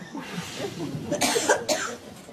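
A person coughing: two harsh coughs about half a second apart in the second half, over low voices.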